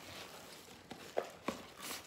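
Faint handling of packaging and a small item, with a few light clicks and taps about a second in.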